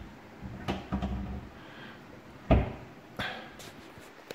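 Overhead kitchen cupboard doors pushed and knocked shut by hand: a few sharp knocks, the loudest about two and a half seconds in.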